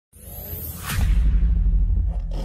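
Logo intro sound effect: a whoosh that grows louder over the first second, then a deep low boom about a second in that holds on as a sustained rumble.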